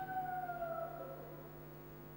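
PA microphone feedback: a thin whistling tone that slides slightly downward and fades out about a second in, over a steady low mains hum.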